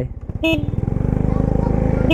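Small motor scooter pulling away and picking up speed, its engine note rising steadily. A short horn toot about half a second in.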